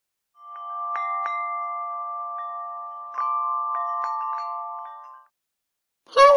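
Wind chimes ringing, several clear metal tones struck again and again and ringing on together, fading in and then fading out.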